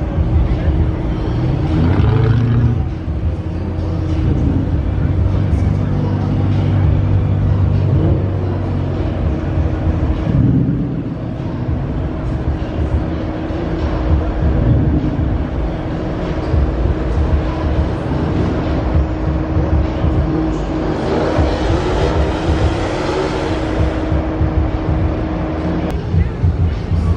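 Car engines running as cars roll slowly past at low speed, with a crowd's chatter mixed in.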